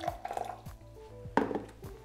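Soft background music, with a few light knocks and clinks as a stainless-steel kettle is set down on a wooden board and a glass measuring jug is handled; the loudest knock comes about one and a half seconds in.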